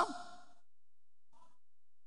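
A man's voice trailing off at the end of a word into a quiet pause in his lecture, with a faint brief sound about one and a half seconds in.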